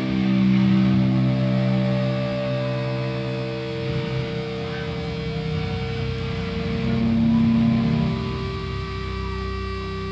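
Amplified electric guitar and electric bass holding long sustained notes and feedback through stage amps, with no drumming; the held pitches change every few seconds as the sound rings out.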